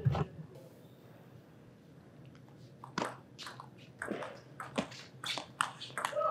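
Table tennis rally starting about halfway: a run of sharp ticks, a few a second, as the celluloid-type ball is struck by the rackets and bounces on the table. The first half is a quiet hall.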